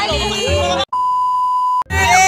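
A single steady electronic bleep, one clean tone held for nearly a second, that starts and stops abruptly, with music and voices cut off just before it.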